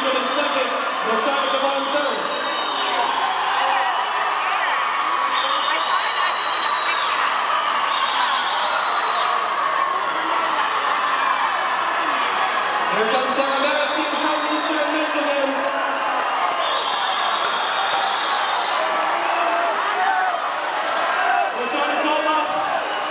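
Spectators cheering and shouting for the swimmers during a backstroke race, a dense crowd of voices in a reverberant indoor pool hall. Shrill high tones about a second long cut through the cheering every few seconds.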